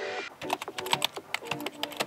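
Keyboard typing sound effect: a quick run of key clicks, about seven or eight a second, as on-screen title text types itself out, over faint music.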